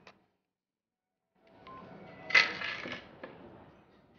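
About a second of dead silence, then background room noise with one loud, sharp clatter about two and a half seconds in.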